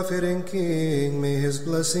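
A man chanting Coptic Orthodox liturgical prayer in long held notes. His pitch drops about halfway through and rises again near the end.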